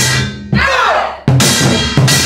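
Samulnori percussion ensemble playing: kkwaenggwari gong and drums struck together in strong, evenly spaced beats about every three-quarters of a second. Each stroke leaves a ringing metallic tone that wavers in pitch.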